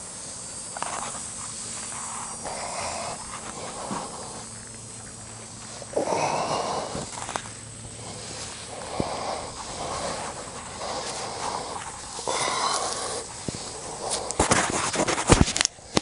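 Fabric of a ventilated bee suit rustling and swishing close against the microphone as it is pulled on over the legs and arms, in irregular swishes every second or two. Near the end comes a flurry of sharp clicks and knocks as the microphone is handled.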